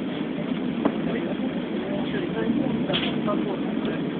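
Steady road and engine noise heard from inside a moving vehicle, with indistinct voices in the background.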